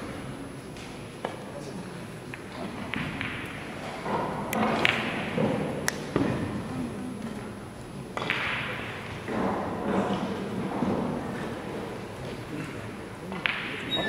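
Carom billiard balls in play: a sharp cue-tip strike about a second in, then a few seconds later several hard clicks of the balls colliding, with dull thuds, over the murmur of voices in a large hall.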